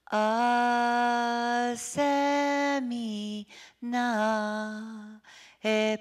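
A woman singing a traditional Cree welcome song solo and unaccompanied, in long held notes. Each phrase ends on a falling pitch, with short breaths between the phrases.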